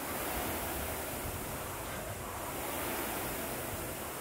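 Rowing machine's fan flywheel spinning with a steady rushing whoosh that swells with each pull, roughly every two and a half seconds.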